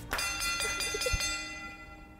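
A single bell-like chime sound effect, struck once just after the start and ringing with several high tones that fade out over about a second and a half.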